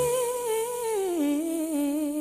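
A single voice humming a long wordless note with vibrato. It slides up into the note, then steps down to a lower note a little over a second in.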